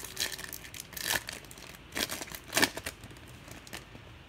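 Wrapper of a baseball trading-card pack being torn open and crinkled by hand, in about five short rustles, the loudest about two and a half seconds in.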